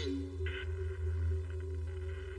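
Low, steady drone with held tones from a film soundtrack, with a brief higher tone about half a second in.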